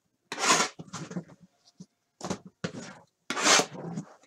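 Plastic-wrapped cardboard boxes of trading cards being lifted and slid about by hand: a series of about five short rubbing, crinkling noises with pauses between.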